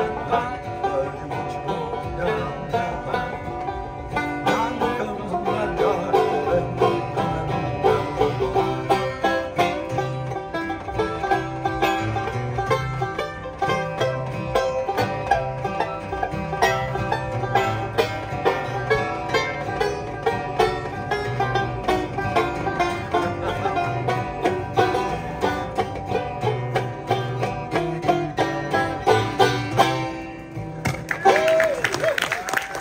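Banjo and acoustic guitar playing a folk tune together without singing, quick banjo picking over the guitar's strummed chords and bass notes. The playing stops right at the end.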